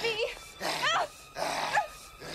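A woman's short, high-pitched strained cries that rise and fall, with hard breaths between them, as she struggles while being grabbed.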